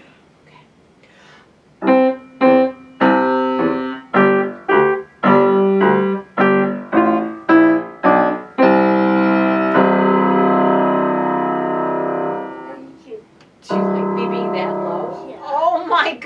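Grand piano duet: a child playing octaves over a teacher's part low in the bass, detached notes about twice a second after a short quiet start. The phrase ends on a held chord that rings and fades, then another low note is struck and held. Laughter comes in near the end.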